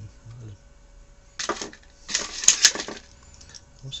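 Clattering and rustling of hand tools being handled on a workbench as a small screwdriver is picked up. There are two short noisy bursts, the second with two sharp clicks close together about two and a half seconds in.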